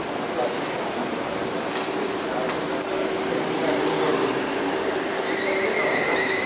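Indistinct chatter of several people talking in a large hall. A faint steady tone joins about two seconds in.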